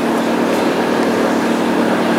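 A motor vehicle engine running steadily, with a constant low hum under a broad noisy rumble.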